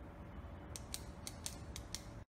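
A short sound effect over the opening title cards: a low rumble with a series of about six sharp clicks, roughly four a second, starting about halfway through and cutting off abruptly.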